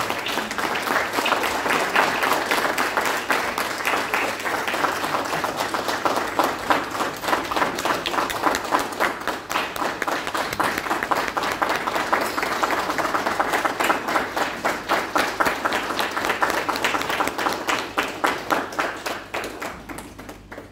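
Audience applauding: many hands clapping in a dense, steady patter that thins out and dies away near the end.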